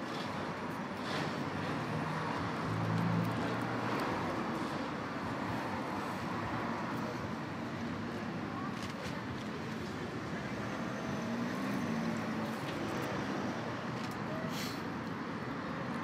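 Steady road traffic noise, swelling slightly about three seconds in.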